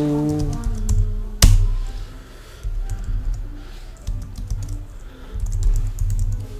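Computer keyboard being typed on in short scattered runs of keystrokes, with one sharp click about a second and a half in that is the loudest sound.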